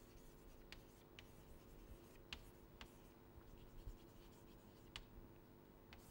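Chalk writing on a blackboard, faint: a few light taps and scratches of the chalk scattered through, over a steady low hum.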